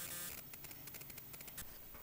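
Faint, irregular clicks and handling noise as hands work the knobs of a bench RF signal generator.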